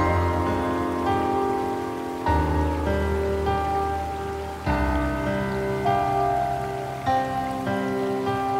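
Slow, gentle solo piano music, a new low chord struck about every two and a half seconds with softer single notes ringing between.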